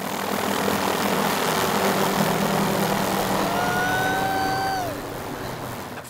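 Helicopter running close overhead on a long-line lift: a steady rushing drone over a low hum. About three and a half seconds in, a single held high tone rises slightly for about a second and a half and then falls away.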